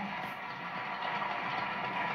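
Studio audience applauding, a steady noisy wash played back through a television speaker.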